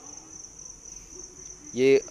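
A steady high-pitched insect drone in the background, with a man's voice starting near the end.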